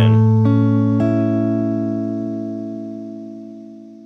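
Electric guitar played fingerstyle: over a ringing low A, two more notes are plucked about half a second and a second in. The chord, built on A, is then left to ring and slowly fades out.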